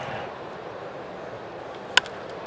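Steady murmur of a ballpark crowd, then near the end a single sharp crack of a wooden baseball bat hitting a pitched ball.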